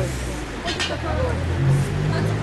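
Voices talking over a low, steady hum.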